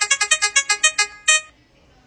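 Game-style electronic beeps: a fast run of short, bright notes, about ten a second, as the truth-or-dare question card shuffles through questions, stopping about a second in with one final beep as the question lands.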